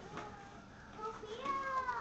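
A dog whining: a few short, faint whimpers, then a longer high whine in the second half that drops in pitch at the end.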